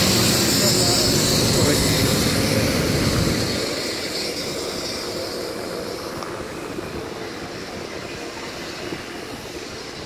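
BR Standard Class 9F 2-10-0 steam locomotive passing close beneath, a loud hissing roar with a heavy low rumble for the first three seconds or so. As the engine moves on, the rumble drops away and the coaches roll by more quietly, the sound fading steadily.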